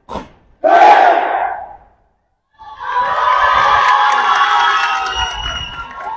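A crowd shouting and cheering: a short loud collective shout about half a second in, then, after a brief silent break, sustained cheering that fades a little near the end.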